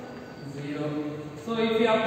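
A man's voice in slow, drawn-out syllables, quiet at first and louder from about one and a half seconds in.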